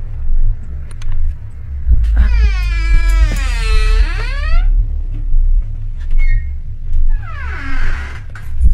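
A door creaking on its hinges in one long wavering squeal lasting over two seconds, then a shorter falling creak near the end. Under it runs a steady low rumble that swells about once a second.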